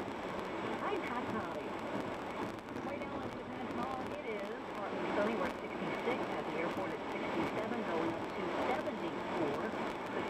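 Indistinct talk from a radio news broadcast, thin and muffled with little bass.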